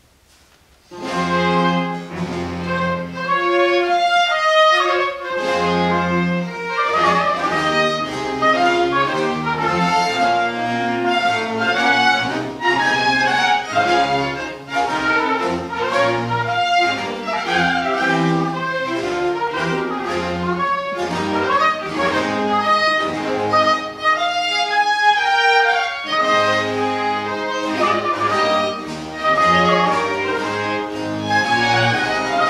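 A small baroque orchestra of violins, cello, double bass, lute, harpsichord and recorder starts playing about a second in, after near silence, and plays on.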